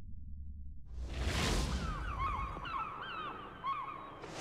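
Logo-sting sound effects: a low rumble, then a whoosh about a second in, followed by a run of short, repeated seagull cries over the last two seconds.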